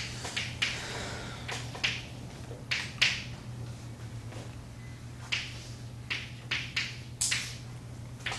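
Chalk writing on a blackboard: irregular sharp taps and short scratchy strokes as the chalk meets the board, over a steady low hum.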